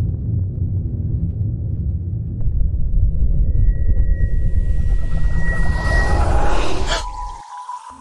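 Dark cinematic underscore: a heavy low rumble with a thin high tone that rises in strength as a hiss swells over it, ending in a sharp hit about seven seconds in, after which the rumble cuts out and a single steady tone lingers.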